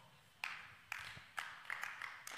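A few faint, scattered hand claps from the congregation, about five sharp claps at uneven spacing starting about half a second in.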